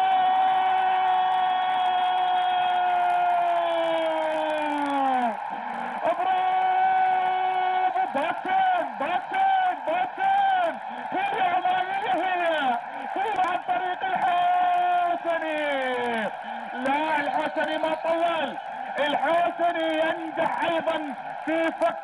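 A football commentator's long, drawn-out excited shout, held for about five seconds and sliding down in pitch at the end. It is followed by rapid excited talk and a second long held shout that also falls away, about eleven seconds later, the way a goal is called.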